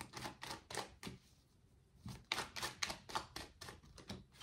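A tarot deck being shuffled by hand, the cards clicking against each other in quick runs: one run, a pause of about a second, then another run.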